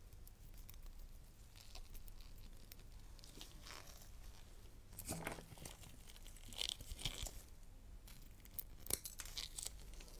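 Eggshell being chipped and peeled off an egg with a thin metal blade: faint crackling and crinkling, with sharper cracks about five, seven and nine seconds in.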